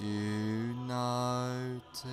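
Meditation backing music with a deep chanted vocal drone in long held notes, the pitch shifting slightly, with a brief hiss like a breath near the end.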